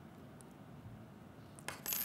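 Quiet room tone with a faint small metal tick as an Allen key works a screw on an aluminium archery sight.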